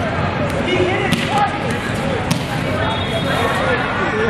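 The din of a busy indoor volleyball hall: many voices talking and calling, echoing in the big room, with a few sharp ball thuds from the courts.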